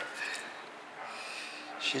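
A short lull: faint room noise with a breathy exhale, then a man starts to speak near the end.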